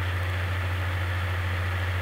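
Steady low hum with an even hiss: the recording's own background noise, unchanged through the pause.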